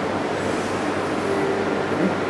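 Steady rushing noise with a low hum from the cold wine cellar's air-conditioning.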